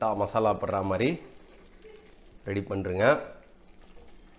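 Two short spoken phrases; in the pause between them, faint stirring of thick gravy with a wooden spatula in a steel pot.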